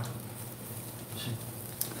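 Beef sizzling quietly on a tabletop grill, with a steady low hum and a few faint ticks.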